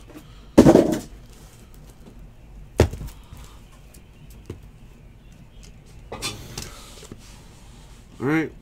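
Handling of a cardboard trading-card hobby box: a brief scraping rustle about half a second in, a sharp knock about three seconds in, and another short rustle near the end.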